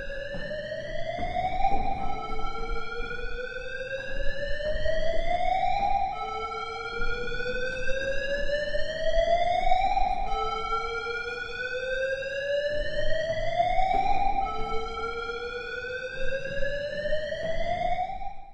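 A siren sound effect: a single pitched tone that climbs slowly for about three and a half seconds, drops back abruptly and climbs again, repeating about five times over a low rumble.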